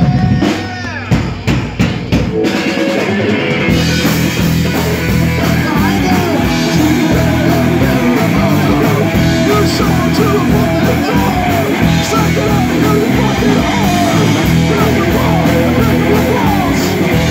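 Live rock band with electric bass, electric guitar and drums: a held chord breaks off, a few sharp hits follow, and about four seconds in the full band kicks in loud and keeps playing, with a singer on a microphone.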